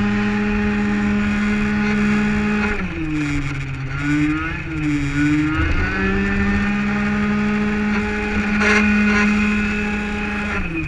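Malossi-kitted 50cc two-stroke racing scooter engine heard from onboard, held at high revs. About three seconds in the revs drop and dip up and down for a few seconds through a corner, then climb back and hold high.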